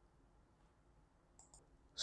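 Near silence, with two faint computer mouse clicks close together about one and a half seconds in.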